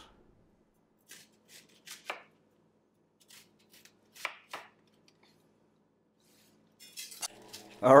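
Chef's knife cutting through a half onion onto a plastic cutting board: about eight short, separate knife strokes scattered through the first five seconds.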